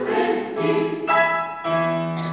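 Mixed choir of women's and men's voices singing held chords that change about every half second, with digital keyboard accompaniment.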